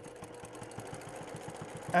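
Sewing machine running steadily in free-motion quilting, its needle stitching through the quilt with a fast, even ticking over a faint hum.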